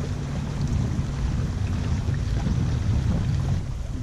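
Steady low hum of a small boat's motor under way, with wind buffeting the microphone and water noise.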